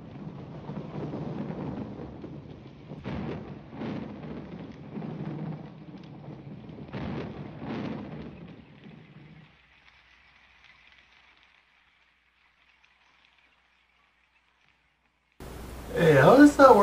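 Thunderstorm from an animated film's soundtrack: rain with rumbling thunder and several sharper cracks in the first eight seconds. It fades out after about nine seconds into near silence.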